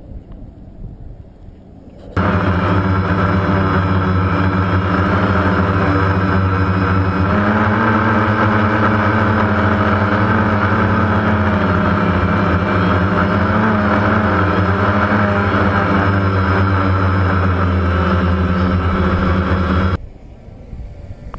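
DJI Phantom quadcopter's motors and propellers running steadily and loudly, heard close up through the camera mounted on the drone, starting suddenly about two seconds in and cutting off abruptly at the end. The pitch steps up slightly about seven seconds in as the drone climbs and flies home on its own in failsafe mode after its transmitter was switched off.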